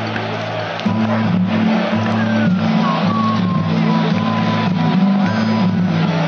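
Live folk metal band playing loud through a festival PA, heard crowded and distorted at a distance, with a heavy bass line shifting between notes. A thin, high whistle-like line glides down and holds from about two seconds in.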